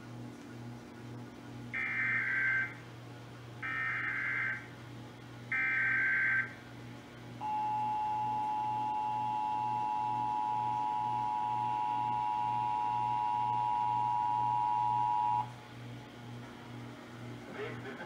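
Emergency Alert System broadcast through a television's speaker: three short bursts of SAME header data tones, each just under a second, then the two-tone attention signal held steady for about eight seconds before cutting off. It marks the start of a statewide Required Monthly Test.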